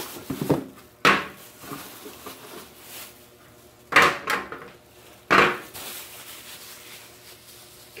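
Hard objects set down on a glass tabletop during unpacking: four sharp knocks, one about a second in, two close together around four seconds, and one just past five seconds, with quiet handling rustle between them.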